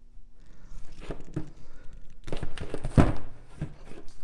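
Wire strippers stripping the insulation off the end of a gas oven igniter's lead wire: scattered small clicks, then a cluster of sharp snaps from about two seconds in, the loudest about three seconds in.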